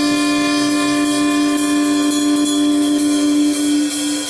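A jazz band with a brass section plays a long held note over cymbal wash; the note fades near the end.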